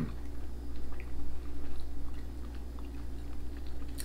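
Chewing of a soft jam-and-chocolate sponge biscuit: faint, irregular mouth clicks over a steady low hum.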